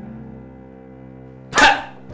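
Soft background music with steady held notes; about one and a half seconds in, a man who has been holding back a laugh bursts out with one short, loud laugh.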